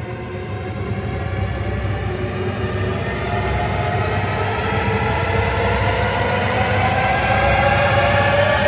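Sampled-orchestra horror film score: a dense sustained chord over a heavy low rumble, its upper voices slowly creeping up in pitch as it swells louder toward the end.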